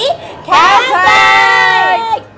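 Several women shouting a long, drawn-out "Kanpai!" together as a toast cheer, starting about half a second in and held for about a second and a half.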